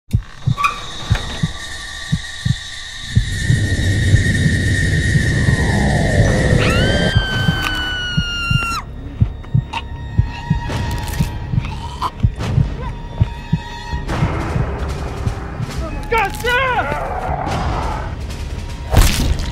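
Horror film soundtrack: a music score of long held tones and gliding pitches, struck through with repeated sharp hits, with a wavering, voice-like cry near the end.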